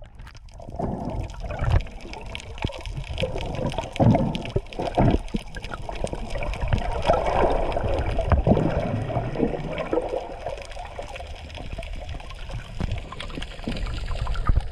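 Muffled underwater water noise picked up by a submerged camera: continuous sloshing and gurgling with irregular knocks and clicks, a few louder thumps about four and eight seconds in.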